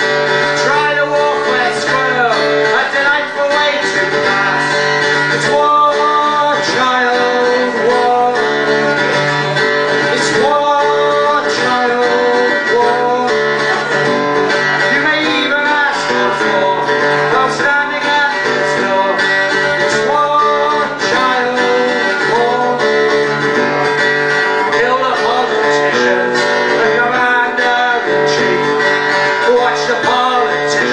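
Live song: a man singing at a microphone over a guitar strummed in a steady rhythm, played through a small PA.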